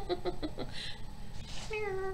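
A domestic cat meowing once near the end, a drawn-out call that falls slightly in pitch.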